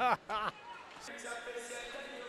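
A man's brief laughter in the first half second, then only faint background sound.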